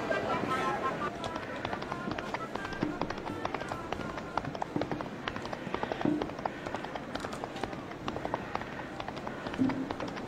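Radio-drama sound effect of a busy street: a murmur of voices and many small irregular steps and knocks. A short musical note fades out in the first second.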